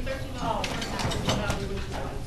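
Low, indistinct talking in a room, with several sharp clicks and rattles about half a second apart, as of things being handled.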